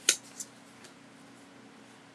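Sheets of cardstock being handled and set down: one short crisp paper rustle and a fainter one a moment later, then only a faint steady low hum.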